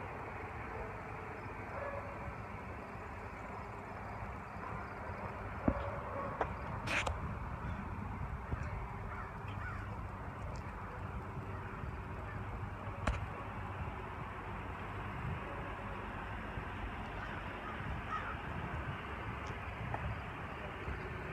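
Steady outdoor background noise of a parking lot, a low hum with a few sharp clicks, twice near the middle and once a little later.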